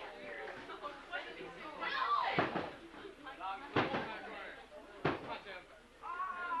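Wrestling crowd shouting and chattering, with two sharp impacts, one about four seconds in and one about five seconds in.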